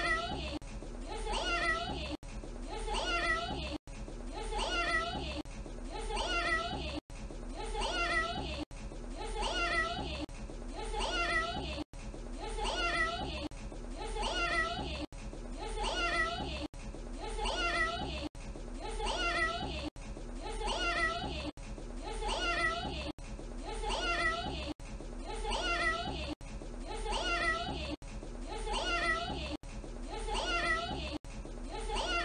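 A young child saying "meow" in a cat-like voice, the same short clip repeated over and over, about once every second and a half, with a brief dropout at each join of the loop.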